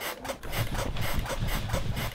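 A bed rocking: rapid, even rubbing and knocking with low thuds, about six or seven a second, starting about half a second in.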